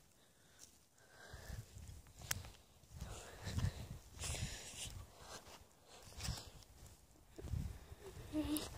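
Faint footsteps on dry, cracked lakebed mud, a soft step about every two-thirds of a second.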